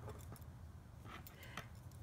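Faint, scattered clicks of metal double-pointed knitting needles touching as stitches are worked, over a low room hum.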